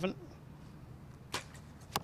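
A compound bow shot: the sharp crack of the release about two-thirds of the way in, then a second sharp hit about half a second later as the arrow strikes the target.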